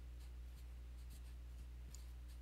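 Felt-tip marker writing letters on paper: a series of short, faint scratchy strokes, over a steady low electrical hum.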